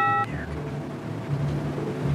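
The end of a short electronic chime sound effect, a bright ringing tone that cuts off about a quarter second in, followed by a low steady hum.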